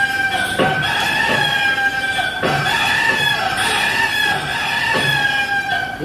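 Cartoon chicken sound effect: a long held crowing call with short falling clucks recurring underneath.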